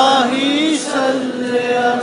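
Male naat reciter singing a drawn-out, ornamented melodic line of an Urdu devotional poem. The voice wavers and slides in pitch and grows softer in the middle.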